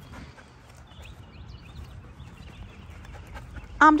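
A young dog panting softly as it trots beside its handler on the leash.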